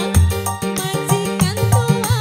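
Live dangdut band music: kendang hand-drum strokes and a steady bass line under keyboard melody, with a regular beat.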